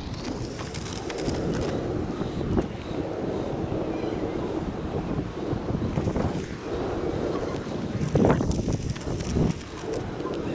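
Wind buffeting the microphone: a steady, rumbling rush that rises and falls, with a few short knocks or scrapes in it.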